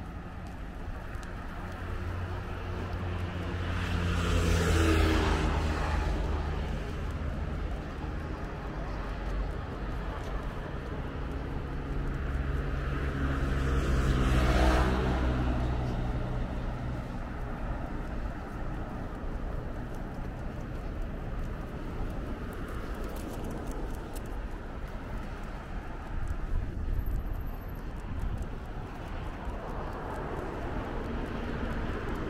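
Road traffic: two motor vehicles drive past, the first about five seconds in and the second about halfway through. Each one's engine note swells and drops in pitch as it goes by, over a steady background of traffic noise.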